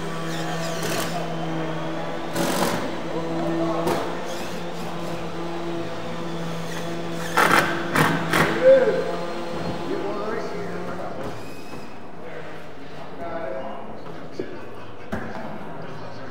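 Workshop sound while a metal-skinned wall panel is being set up: a steady low hum that stops about eleven seconds in, a few short sharp knocks, and voices talking in the background.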